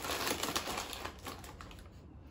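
Shiny plastic snack bag of shrimp crackers crinkling and crackling in quick irregular clicks as it is pulled open and handled, fading toward the end.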